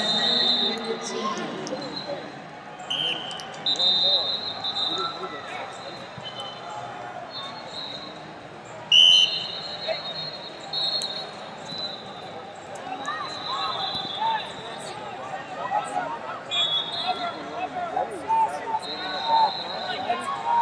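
Busy wrestling tournament hall: a steady hubbub of voices and shouts, with about eight short, steady, high whistle blasts from referees on neighbouring mats, the loudest about nine seconds in.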